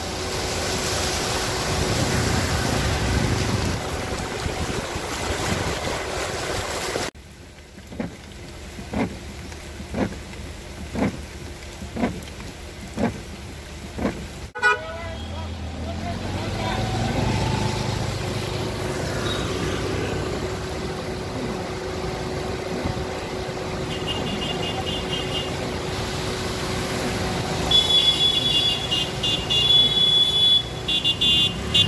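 Rain and road traffic on waterlogged streets: a steady wash of noise as vehicles drive through the water. Midway there is a run of short toots about once a second, and there is high-pitched beeping near the end.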